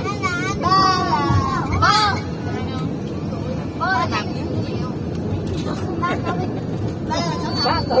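Several people talking and calling out inside a minibus cabin, over the steady hum of the engine and road noise.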